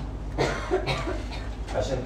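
A cough about half a second in, over a steady low hum, with a man's voice starting again near the end.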